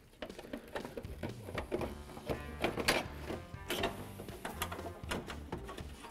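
Plastic clicks and rattles of a new 2001 Ford Ranger headlight assembly being wiggled so its pins slide into the mounting openings. There are several sharp clicks, the clearest about three seconds in, over soft background music.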